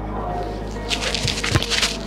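Background music with sustained low notes, and a single dull thud about one and a half seconds in: a football being struck hard in a long-range kick.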